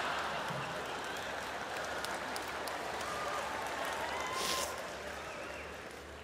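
Audience applause dying away gradually, with a few faint voices in the crowd.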